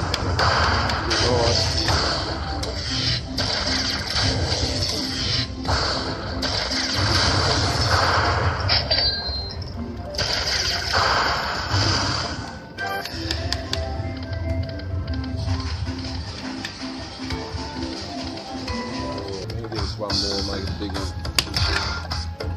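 Electronic music and jingles from a Lightning Link pokie machine, with a stepping tune in the second half as a free-spins win is tallied.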